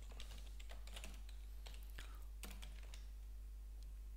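Faint typing on a computer keyboard: irregular runs of key clicks as a password is entered at a terminal prompt.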